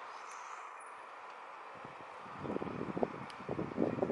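Steady road-traffic hum, joined about halfway through by a louder, uneven rumble from a passing vehicle.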